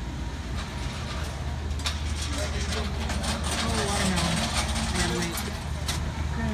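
Busy warehouse store ambience: a steady low hum under indistinct voices of shoppers, with a few light clicks and knocks.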